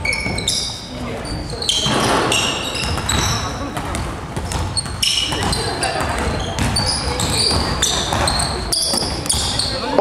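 Basketball shoes squeaking in many short chirps on a wooden gym floor, with a basketball bouncing, as players move around the court.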